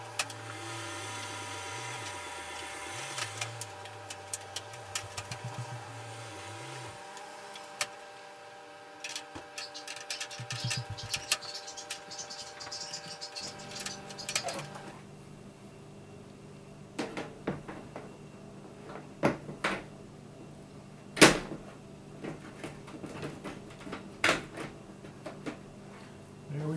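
Fluorescent tubes being fitted into the fixture's lamp holders and the plastic lens cover being put on: scattered clicks and knocks, the loudest a sharp click about two-thirds of the way through, with a steady hum beneath in the first half.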